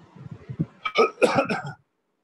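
A person coughing, a quick run of several sharp coughs lasting under a second, near a computer microphone.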